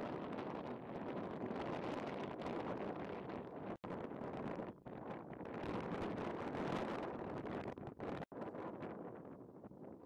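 Wind rushing over the microphone outdoors, a steady noisy roar with no clear pitch. It cuts out briefly twice, a little under four seconds in and again about eight seconds in.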